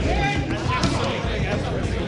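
Men's voices in a room, reacting over one another, with a few dull thumps.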